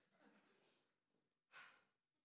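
Near silence, with one short audible breath from a person about one and a half seconds in.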